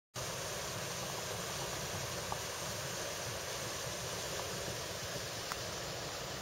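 Steady outdoor background noise: an even hiss with a low rumble beneath it, and a few faint clicks.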